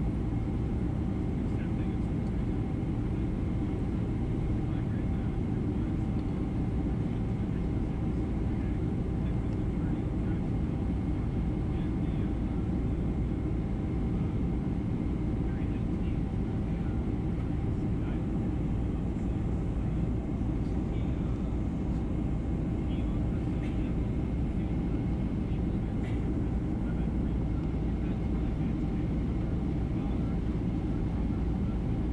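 Steady cabin noise of a Boeing 767-300 airliner in cruise, heard at a window seat over the wing: a deep, even rush of airflow and jet engine drone with a faint, steady higher whine.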